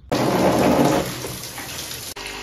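Water splashing and gushing, loudest in the first second, then settling to a steady pour as water runs into a plastic tub holding a live carp.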